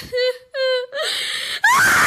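A high-pitched human voice wailing in short, quavering cries, then breaking into a loud, sustained scream about a second and a half in.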